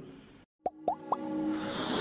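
Three quick rising plop sound effects about a quarter second apart, then a whoosh that swells louder into an electronic logo-intro jingle.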